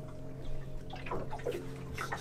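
Water lapping and sloshing against a boat hull, over a steady low hum.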